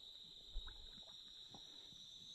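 Near-silent night ambience: a faint, steady high chirring of crickets, with two soft knocks, about half a second and a second and a half in.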